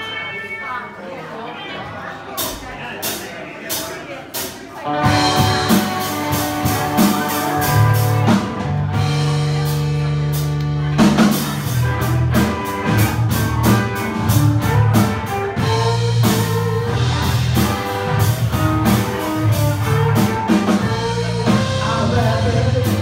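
Live rock band: over crowd chatter and a few sharp hits, the band starts about five seconds in with electric guitars, bass and a drum kit playing an instrumental intro.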